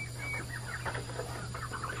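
Poultry clucking softly, a quick run of short calls starting about half a second in, over a faint steady hum.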